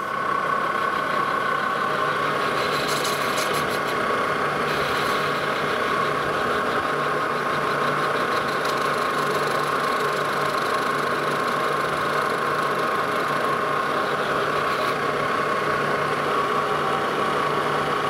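Metal lathe running at a steady speed with a constant high whine, spinning a steam locomotive throttle valve while the tool is brought in to touch off on the valve face.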